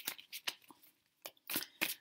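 A deck of tarot cards being shuffled by hand: a run of short, sharp card snaps, several a second, with a brief pause about halfway through.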